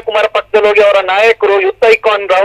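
Speech only: a person talking, with brief pauses between phrases.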